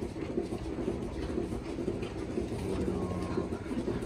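Steady low mechanical running noise of dairy barn machinery, with a faint short tone about three seconds in.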